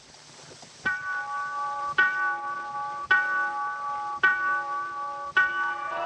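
A clock's bell striking midnight: five slow, evenly spaced strokes about a second apart, each left ringing.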